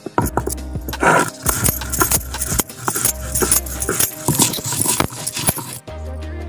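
Stone grinder (sil-batta) rubbed back and forth over a wet stone slab, grinding seeds into a paste: repeated gritty scrapes and knocks, stone on stone. Background music plays underneath.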